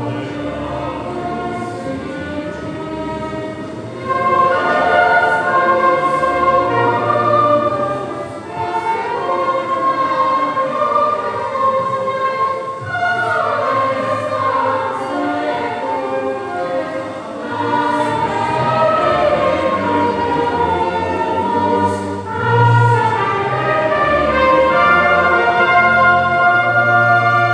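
A choir singing a piece with orchestral accompaniment, softer for the first few seconds and fuller from about four seconds in.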